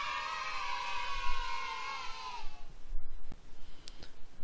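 A sustained synthesized chord, an intro logo sting, holding many bright tones and fading out about two and a half seconds in. A faint click follows near the end.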